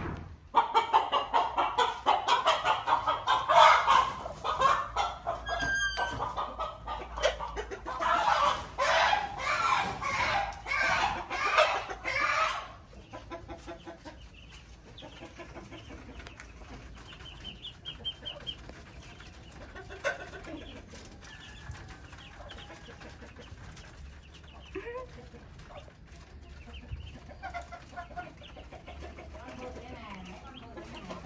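Chickens clucking and cackling loudly and continuously for about the first twelve seconds, then only scattered quieter clucks and calls.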